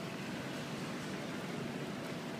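Steady background noise of a large airport baggage-claim hall: an even hum and hiss with no distinct events.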